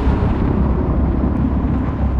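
Loud, deep and steady rumble of a nuclear explosion, generated by Google's Veo 3 AI video model.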